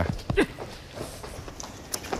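Footsteps and scuffing on a stage floor as two men drag a third man out, with two short grunts in the first half second.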